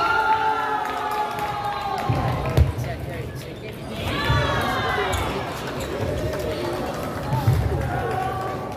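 Busy table tennis hall: two long, slowly falling shouted calls from players or teammates, with several low thuds on the wooden floor.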